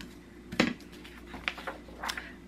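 A sharp knock about half a second in, then a couple of lighter taps, as a wooden rat trap and a sheet of paper are moved on a craft table.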